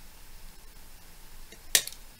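A single sharp crack near the end as a fork strikes an eggshell, breaking the egg open.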